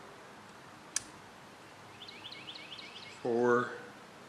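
A single sharp click about a second in, then a quick run of short high chirps, about seven in a second, from a small bird, followed near the end by a brief spoken word.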